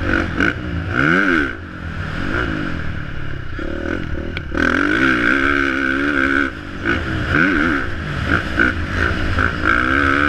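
Motocross bike engine heard from the rider's helmet, revving hard and falling away again and again as the throttle is worked over the jumps, its pitch rising and dropping in quick sweeps. It briefly goes quieter twice, about one and a half seconds in and again past six seconds.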